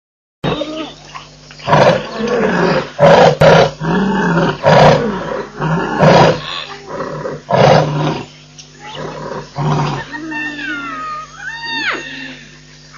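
Lion roaring bout: a run of loud roars and grunts, roughly one a second, spacing out and weakening toward the end. A few thin gliding whistle-like calls follow near the end.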